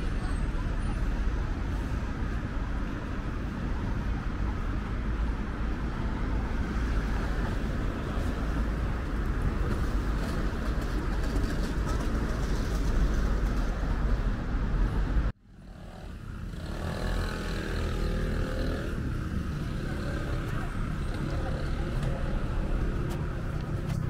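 City street ambience of traffic: a steady noise with a heavy low rumble that cuts off abruptly about fifteen seconds in, then comes back quieter with faint voices.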